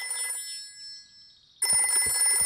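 Cartoon telephone ringing for an incoming call on a green dial telephone: one ring that stops about half a second in, a pause, then the next ring starting about a second and a half in.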